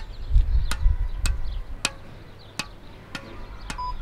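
A squash ball bouncing repeatedly on the strings of a squash racket, held backhand face up, giving about seven evenly spaced hits. A low rumble sounds during the first second.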